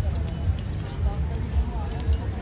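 Indistinct voices in the background, with light clinks and a low thud about twice a second.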